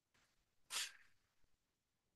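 A man's single quick, sharp breath a little under a second in, taken as he lifts his legs during leg lifts.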